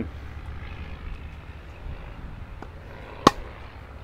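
A single sharp crack of a tennis racket's strings striking a ball, a little past three seconds in, over steady outdoor background noise.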